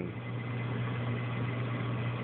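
Aquarium refugium and pump equipment running: a steady low hum under an even hiss of water moving through the system.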